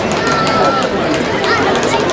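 Outdoor crowd of adults and children chattering, with a few high children's voices calling out over the general hubbub.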